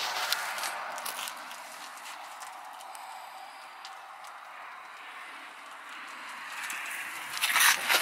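Faint steady background hiss with a few light clicks in the first second or so; no engine or machine is running.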